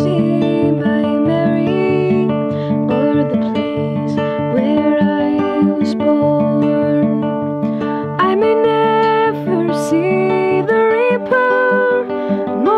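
Acoustic guitar accompaniment with a woman singing over it, her voice holding long notes that slide between pitches.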